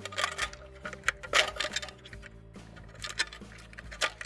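Plastic wire-harness connectors and wiring clicking and rattling as they are pushed onto an electric range's control board. There are several sharp clicks, the loudest about a second and a half in.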